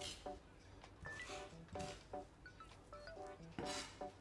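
Faint background music of short plucked notes, with a few soft scrapes of a chef's knife dragged across a wooden cutting board as garlic is mashed with salt.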